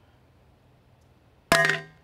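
A 30-round-loaded XTECH MAG47 polymer AK magazine, dropped from chest height, strikes a steel plate about a second and a half in: one sharp clang with brief metallic ringing. It lands squarely on its feed lips.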